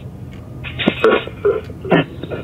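Choppy, chopped-up voice-like fragments and clicks played through a small modified speaker 'portal' running ghost-box software. Several short bursts come about a second in and again near the end.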